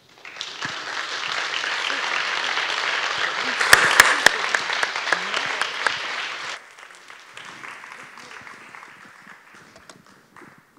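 Audience applause in a hall, with a few loud close claps near the middle. It stops fairly abruptly about six and a half seconds in, leaving a faint, fading tail.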